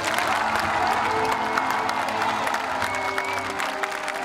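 Crowd of spectators applauding while music with long held notes plays.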